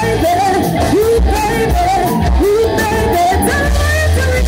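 Live rock band playing: a woman singing lead, her voice sliding between notes, over electric guitar, bass guitar and a drum kit.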